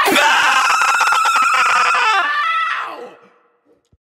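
A long held scream that slides down in pitch and fades out about three and a half seconds in, ending the song.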